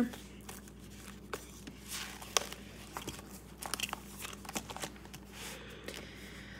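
Paper banknotes and clear plastic binder envelopes being handled: soft rustling and crinkling with scattered light clicks and taps, one sharper click a little over two seconds in.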